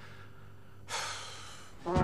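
A man's breath, a short, noisy exhalation like a snort or sigh, about a second in that fades over most of a second. It follows his disgusted remark about a fouled call-box receiver.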